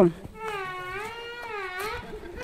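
A toddler's long, high-pitched whining vocalisation, wavering up and down in pitch for about a second and a half.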